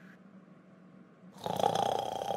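A sleeping cartoon character snoring: a quiet stretch, then a loud snore starting about one and a half seconds in.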